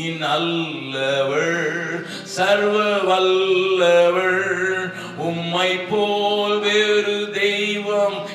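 A man singing a worship song solo into a handheld microphone, holding long notes and sliding between them in phrases about a second or two long.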